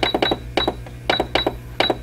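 Keypad beeps from a Singer computerized patchwork sewing machine as its buttons are pressed to set the stitch width and length: a quick series of short, high beeps, about eight, unevenly spaced.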